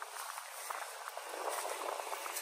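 Faint crunching and rustling of footsteps on dry, harvested corn stalks, with light scattered crackles over a soft outdoor hiss.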